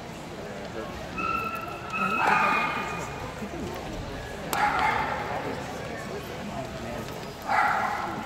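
A dog in the show hall gives a high, steady whine, then three short yipping barks, each a couple of seconds apart.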